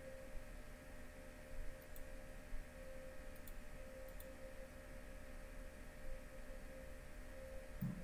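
Quiet room tone with a faint steady hum, broken by a few faint clicks.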